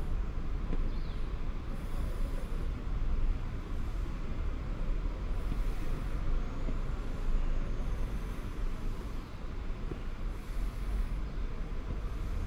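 Steady outdoor background rumble, heaviest at the low end, with a faint short bird chirp about a second in.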